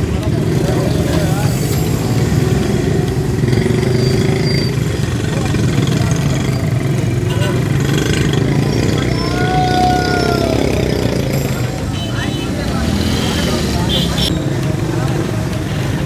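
Busy street traffic noise, mostly motorcycle engines running, with the chatter of many people in the background. The rumble is steady and loud throughout.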